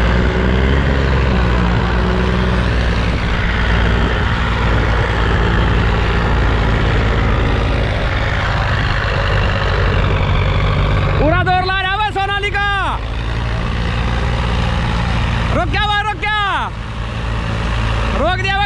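Diesel tractor engines of a Sonalika DI-35, a Farmtrac 60 EPI and a John Deere 5036 D running hard under load, pulling against each other on a chain in a tug of war. Their steady low drone runs on throughout, with a man shouting loudly twice, briefly, near the middle and again later.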